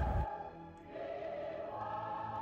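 Soft background music of held, choir-like chords, fading in about a second in.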